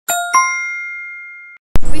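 Edited-in chime sound effect: two bright metallic dings about a third of a second apart, ringing out for over a second before stopping abruptly.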